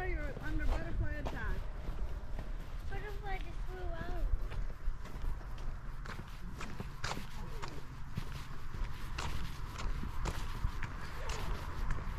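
Footsteps on a concrete path, about two a second, over a steady low rumble. Brief voices are heard in the first few seconds.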